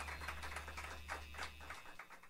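Faint, scattered clapping from a few people after the song has ended, over a low amplifier hum that cuts out near the end.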